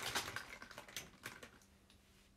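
Quick, irregular typing taps, fading out after about a second and a half.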